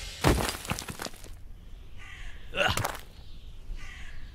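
Several sharp cracks and clicks in the first second, then a brief wordless vocal sound a little past halfway.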